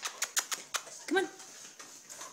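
A dog's claws clicking on a hard floor as it walks, a quick run of about half a dozen sharp ticks in the first second.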